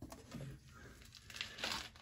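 Faint handling sounds as the hinged steel door of an electrical enclosure is swung open, with a few soft rustles and a slightly clearer noise near the end.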